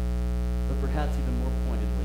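Steady electrical mains hum, a stack of low steady tones, with a short voice sound lasting about a second near the middle.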